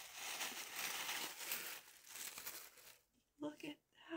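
Tissue paper rustling and crinkling as a hardback book is pulled out of its wrapping, lasting about three seconds and then stopping.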